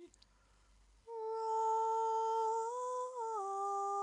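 A woman's unaccompanied voice. After a pause of about a second, she holds one long note, which steps up and then down in pitch near the end.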